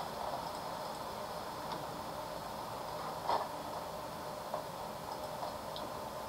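Low steady background hiss of a quiet room, with a few faint short clicks and one slightly louder short sound about three seconds in.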